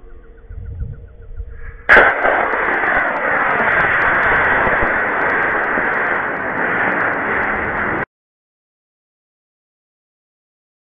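Model rocket motor igniting with a sudden loud onset about two seconds in, then a steady rushing roar as it burns, which cuts off abruptly near the end.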